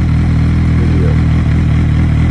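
2008 Suzuki B-King's inline-four engine idling steadily, with an even low note that holds at one speed.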